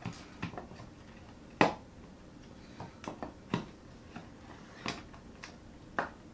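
Scattered sharp clicks and taps of small computer parts being handled and fitted inside an opened 2011 Mac Mini, the loudest about a second and a half in, with a few more spread through.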